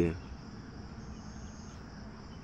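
Faint, steady high hiss of burger buns and potato tikkis sizzling gently in a little oil on a flat iron tawa over a low gas flame.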